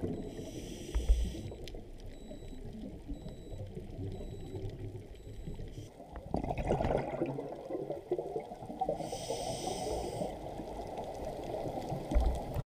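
Scuba diver breathing through a regulator underwater: a hissing inhale in the first second and again about nine seconds in, with the rumble of exhaled bubbles rising from about six seconds in.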